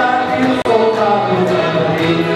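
Group singing of several voices together, accompanied by small guitar-like string instruments played by the standing musicians. The sound cuts out for an instant a little over half a second in.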